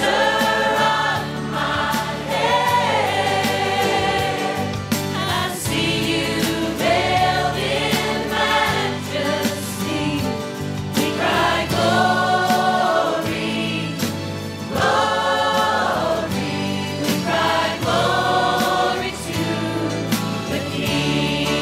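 Live worship song: several female voices singing together in held phrases over instrumental backing with a steady low bass line.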